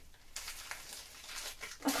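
Faint, irregular crinkling and rustling of a small black plastic bag being handled as a vinyl figure is worked out of it.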